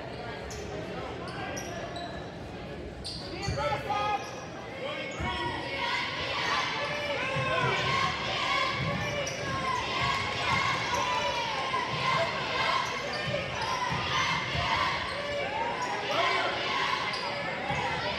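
Basketball dribbled on a hardwood gym floor during a game, with players' shoes squeaking and spectators chattering in the hall. It gets busier from about five seconds in.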